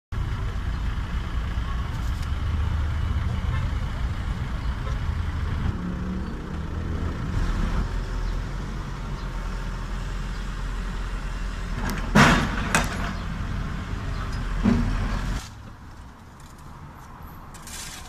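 Diesel engine of a Caterpillar backhoe loader running steadily at a street excavation, with three sharp loud knocks a little past twelve and near fifteen seconds in; then it gives way to a much quieter background.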